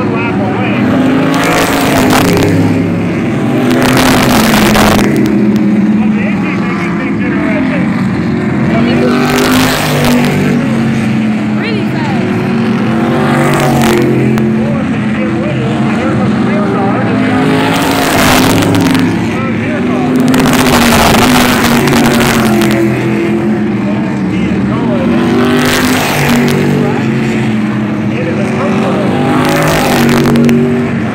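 Modified race cars running laps on a paved oval, their engines loud and continuous, with a rush of noise each time cars pass close, roughly every four to five seconds.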